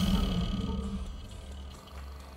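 Film score and sound design: a deep rumbling swell dying away over the first second or so, leaving a low electronic hum that fades near the end.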